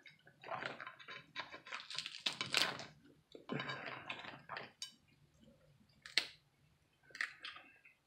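Cooked crab shells being cracked and pulled apart by hand: a run of crackling and snapping, then a few separate sharp snaps about six and seven seconds in.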